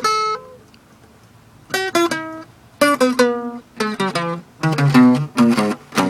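Steel-string acoustic guitar playing single picked notes. One note rings out at the start, then after about a second's pause comes a quick run of separate notes, three per string, through a fifth-position box in E.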